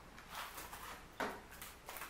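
A few faint rustling and scraping sounds of a small cardboard box being opened and a plastic-wrapped compact makeup palette slid out, the sharpest a little over a second in.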